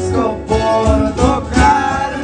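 Live music: acoustic guitar playing with men singing along.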